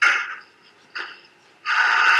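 A door being handled and opened: a short noisy burst, a click about a second in, then a longer loud scrape-like burst near the end.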